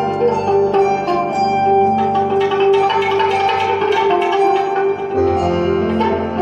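Live duo of hollow-body electric guitar and electronic keyboard playing a slow, ambient piece: steady held keyboard tones under a stream of plucked guitar notes. A deeper bass tone comes in about five seconds in.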